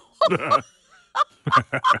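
A woman and a man laughing together: one drawn-out laugh, then a run of short laugh bursts in the second half.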